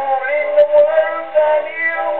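A c.1911 acoustic 78 rpm disc recording of a music-hall comic song with orchestral accompaniment, played on a horn gramophone. It sounds thin, with no treble at all.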